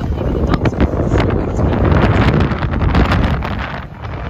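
Strong wind buffeting the microphone: a loud, low rumble with crackling gusts that swells in the middle and eases near the end.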